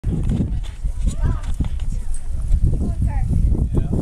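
People talking indistinctly over a steady low rumble.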